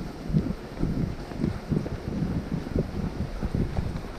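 Wind buffeting the microphone of a camera moving at speed behind a skier towed by dogs, an uneven low rumble in gusts.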